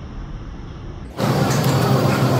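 Busy restaurant buffet room noise: a low rumble that jumps abruptly, about a second in, to a louder steady hum and noise.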